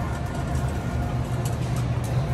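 Shopping cart rolling along a store floor, a steady low rumble with faint rattling ticks.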